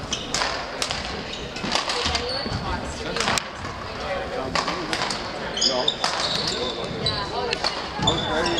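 Badminton hall ambience: a series of sharp racket hits and a few high shoe squeaks on the hardwood gym floor, with voices talking.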